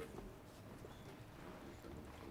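Quiet room tone with a low hum and a few faint taps and rustles of paper being handled at a desk.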